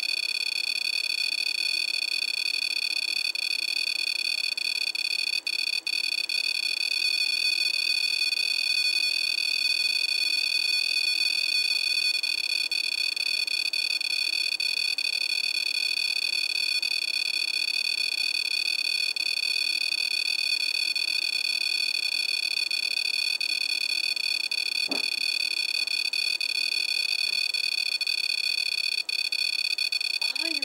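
REM-POD EMF detector's piezo buzzer sounding a continuous high-pitched alarm tone, briefly cutting out a few seconds in and again near the end. The alarm sounds when the field around its antenna is disturbed.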